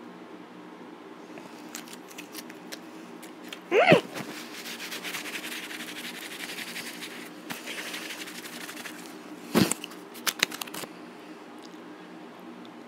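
Close-miked eating sounds: wet mouth clicks and chewing, with several sharper clicks near the end. A short vocal sound comes about four seconds in, and a steady low hum runs underneath.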